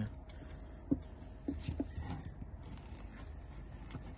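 Faint handling noises as gloved hands work a block of crab cart bait into a PVA tube: a few soft, short taps and rustles, with a light tap about a second in and a few more shortly after.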